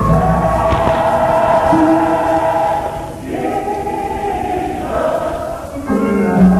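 Gospel church choir singing long, held chords, the sound dipping briefly about halfway through before the next phrase; heard through an old radio broadcast recording with static hiss.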